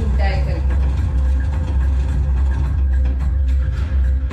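A deep, steady low rumble from a film soundtrack, with a faint held tone above it. A voice is heard briefly at the very start.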